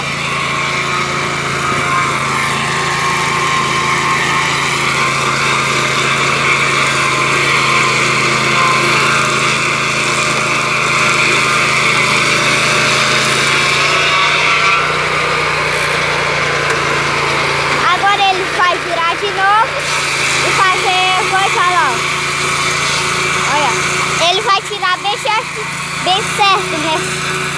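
Portable sawmill's engine running steadily as its cutting head saws along a log, with a steady pitched hum; the sound shifts about halfway through.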